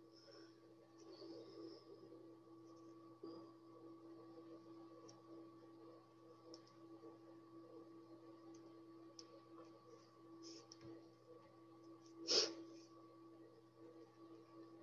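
Near silence: quiet room tone with a steady low hum and faint small ticks of cardstock pieces being handled on a table, with one brief sharper click or rustle near the end.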